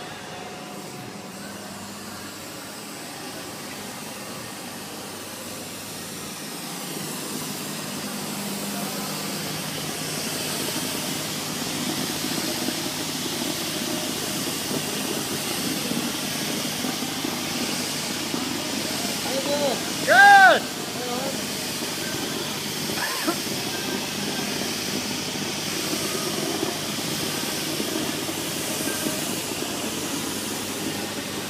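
Steady rushing hiss of air and fibre from a hose nozzle spraying Spider fiberglass insulation into wall cavities, growing louder as it comes closer. About two-thirds of the way through, a brief loud pitched call or squeal rises and falls over it.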